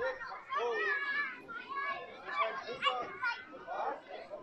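Crowd of onlookers talking over one another, with high children's voices among them; no blast yet.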